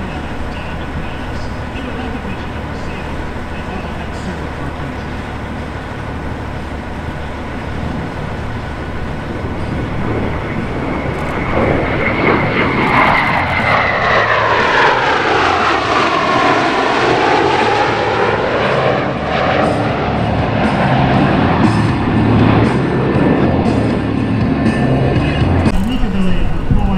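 Northrop F-5N Tiger II jet fighters flying past, the engine noise of their twin J85 turbojets building from about ten seconds in. As they pass it sweeps down in pitch, then stays loud as they fly on.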